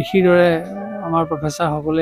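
A man speaking, opening with a long drawn-out syllable held on a steady pitch for about a second, then going on in quicker syllables.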